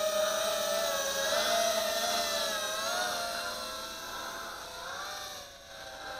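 Eachine Racer 180 tilt-rotor drone's 2205 brushless motors and propellers whining in flight. The pitch wavers slightly with the throttle, and the sound grows gradually quieter as the drone flies away.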